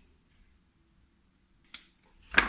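Mostly quiet, then about three-quarters of the way through a single brief snip of side cutters cutting a length of PTFE sleeving for the 1 mm silver earth wire.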